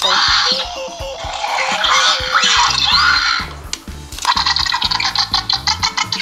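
Electronic dinosaur sound effects from a Jurassic World Baby Blue velociraptor toy set off by pressing its back: raspy screeching calls with rising chirps, then a fast rattling run of clicks in the last two seconds, over background music.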